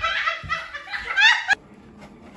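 A person laughing in quick, repeated bursts, cut off abruptly with a click about one and a half seconds in.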